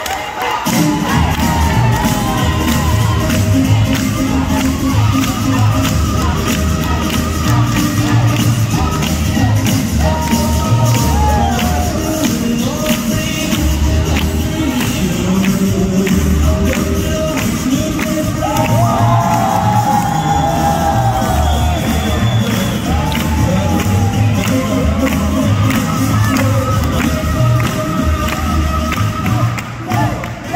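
Up-tempo boogie woogie dance music with a steady beat, with the crowd cheering and whooping along. The music breaks off near the end.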